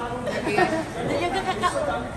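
Chatter of several people talking at once, no single voice clear.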